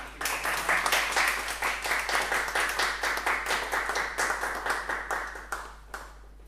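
A small audience clapping in a classroom, starting just after the start and dying away shortly before the end.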